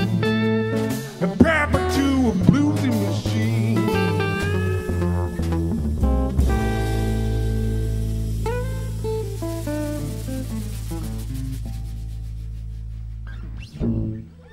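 Live blues band, with acoustic guitar, electric guitar, upright bass and drums, playing the closing instrumental bars of a song. About six seconds in, a low final note is struck and held, fading slowly under a few last guitar notes, and it stops just before the end.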